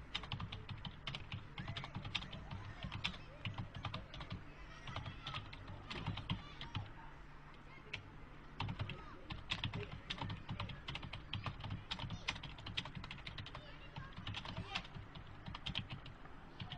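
Typing on a computer keyboard: quick, irregular key clicks in runs, with a short pause about seven seconds in before the typing resumes.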